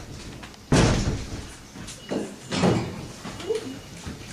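Handling knocks at a lectern as a glass bottle and drinking glass are picked up and moved: one loud thump about a second in, then a few softer knocks.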